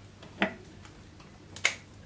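Two sharp snips about a second apart: florist's scissors cutting short foliage stems.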